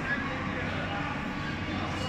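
Faint, distant voices over a steady low background hum.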